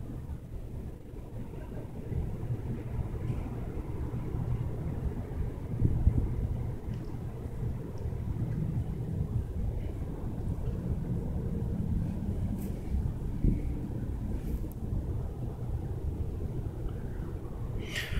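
Wind buffeting the camera microphone outdoors: a steady low rumble that rises and falls irregularly.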